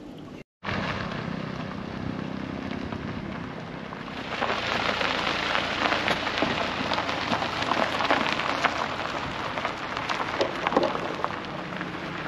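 A car towing a small camping trailer rolls slowly over a gravel road. Its tyres crunch and crackle on the stones, growing louder from about four seconds in, over a low engine hum.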